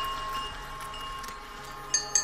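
A quiet breakdown in a future bass track, with a soft synth chord held steadily and no drums. A sharp hit comes in right at the end as the beat returns.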